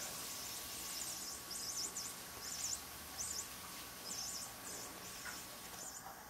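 Flying mouse toy giving off faint, high-pitched electronic squeaks in short irregular bursts.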